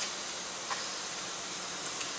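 Steady background hiss of room noise, with a faint click about two-thirds of a second in.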